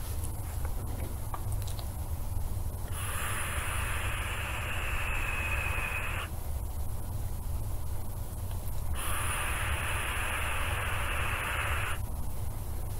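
A steady low hum, with two spells of hiss, each about three seconds long, that switch on and off abruptly.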